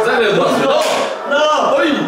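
Excited voices talking, with the pitch rising in places.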